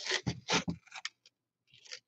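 Masking tape being peeled off the edges of a painted diorama base: a few short tearing pulls in the first second, a pause, then more pulls near the end.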